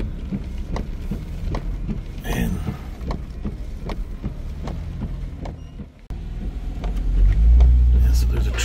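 Car cabin noise while driving slowly: a low engine and road rumble with scattered light ticks. The rumble grows louder near the end.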